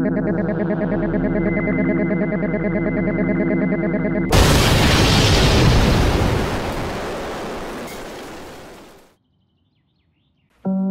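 A cartoon sound effect: a harsh, distorted electronic buzz with a fast pulsing flutter for about four seconds, then a sudden loud explosion blast that fades away over the next five seconds.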